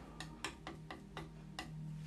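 A metal palette knife tapping and clicking against the paint palette while paint is loaded, about eight light, irregular clicks.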